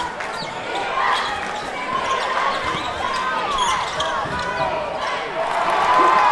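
Live basketball game sound in a gym: a basketball being dribbled on a hardwood court, sneakers squeaking, and a crowd of voices chattering.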